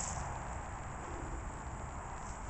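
Steady outdoor background noise: a low rumble with an even hiss above it and no distinct event.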